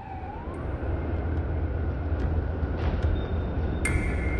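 Fire truck siren falling in pitch, rising briefly and fading in the first half-second or so, followed by the steady low rumble of the truck's engine.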